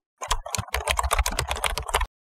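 Rapid computer-keyboard typing sound effect, a quick run of key clicks at about eight a second, starting a moment in.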